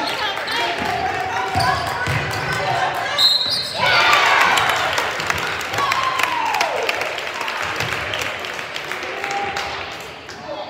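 Indoor basketball game: a ball bouncing and shoes squeaking on a hardwood court under the voices of players and spectators. About three seconds in, a short high whistle sounds, most likely the referee stopping play, followed by louder crowd noise and shouting.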